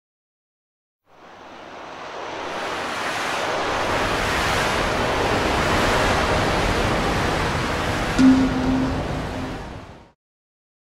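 A steady rushing noise, like surf, fades in about a second in, holds and fades out at the end. A short low tone with a click at its start sounds about eight seconds in and is the loudest moment.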